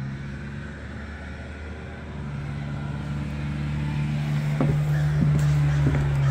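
A steady low mechanical hum, like an engine or motor running, growing gradually louder, with a few light knocks in the second half.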